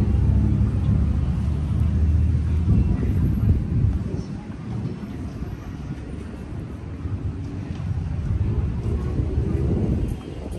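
Low, steady rumble of a motor, louder in the first four seconds, easing, then rising again near the end, with people's voices in the background.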